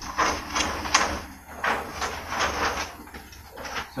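Large paper plan sheets rustling and crinkling as they are handled and turned, in a run of irregular swishes.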